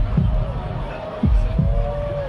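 Deep electronic bass-drum thumps in a heartbeat-like double pulse, a pair about every second and a half, with a held synth tone over them, played loud through a festival PA.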